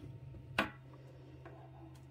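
A single short, sharp click about half a second in, from multimeter test leads and alligator clips being handled, over a faint steady low hum.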